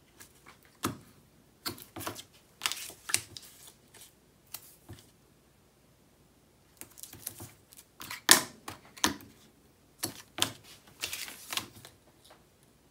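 Hands handling cardstock and applying strips of double-sided tape: irregular sharp clicks, taps and short paper rustles, with a pause about midway and the loudest click just past the middle.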